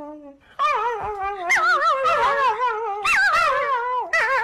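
Puppy howling and whining in long, wavering, high-pitched calls, starting about half a second in, with a brief break near three seconds.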